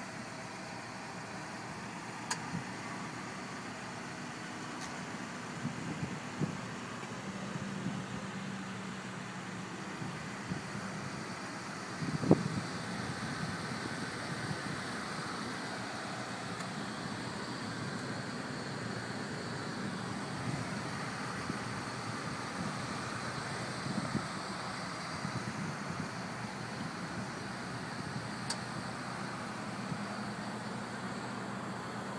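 Steady outdoor background hum of vehicles and traffic, with a few faint knocks and one louder thump about twelve seconds in.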